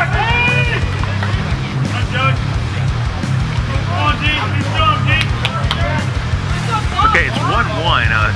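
Wind buffeting the microphone as a steady low rumble, with music and voices calling out over it.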